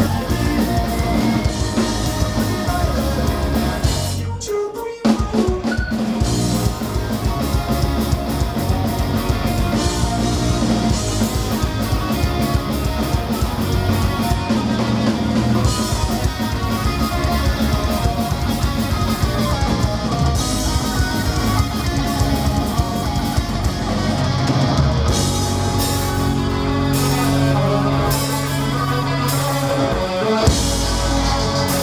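Punk rock band playing live on electric guitars, bass and drum kit, with a brief break about four seconds in before the full band crashes back in.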